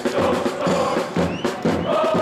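Football supporters chanting in unison, kept in time by a drum beaten about twice a second.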